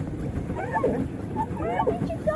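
Wind rumbling on the microphone over choppy lake water from a moving pedal boat, with faint voices in the background.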